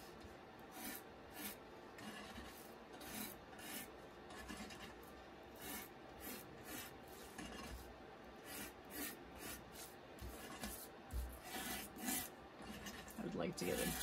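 Stiff, hard-bristled splatter brush loaded with ink scratching across cardstock in short, repeated strokes, about two a second, drawing wood-grain lines. Between strokes it is dabbed on a glass ink mat.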